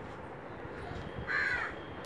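A single short bird call about a second and a half in, heard faintly over low room hiss.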